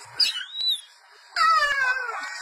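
A cat meowing: a short, high-pitched chirp with wavering pitch, then about a second in a long, loud meow that falls in pitch.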